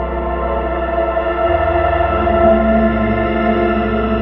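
Guitar duet played through effects units with echo and chorus: slow, layered held tones over a low fluttering drone, with a new low note swelling in about two seconds in.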